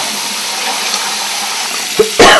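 Water running steadily from a bathroom mixer tap into a ceramic washbasin, splashing over hands held under the stream.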